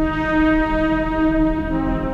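Downtempo instrumental music: a trumpet holds one long note that drops to a lower note near the end, over a low, steady bass drone.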